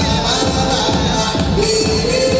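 Loud electronic dance music with a steady beat, the music of a cheerleading routine.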